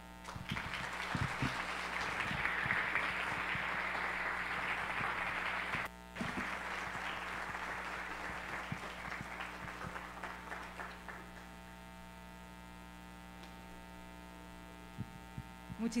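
Audience applauding, broken off briefly about six seconds in, then dying away after about eleven seconds to leave a steady electrical hum.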